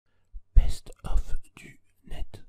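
A whispered voice over an animated logo intro: a few short breathy syllables starting about half a second in.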